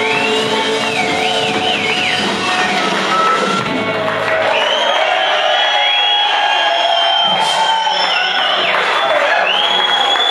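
Live rock band with electric guitar finishing a song: the bass and drums drop out about three and a half seconds in, and the crowd cheers and whoops over the last ringing notes.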